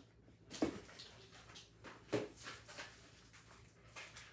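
Faint handling noises as craft supplies are picked up and moved: a few soft rustles and light knocks, the clearest about half a second and two seconds in.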